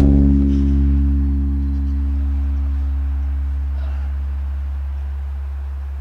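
Electric bass guitar's last low note left to ring out. Its upper overtones fade within the first few seconds while the deep fundamental dies away slowly.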